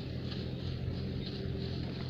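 A steady low motor hum runs throughout, with faint crinkling of a plastic bag being handled.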